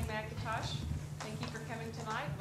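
A woman speaking through the hall's sound system, her voice in short phrases, with a steady low hum underneath.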